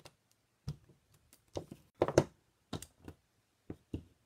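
Irregular light taps and knocks of craft supplies being handled and set down on a tabletop, with the loudest pair about two seconds in.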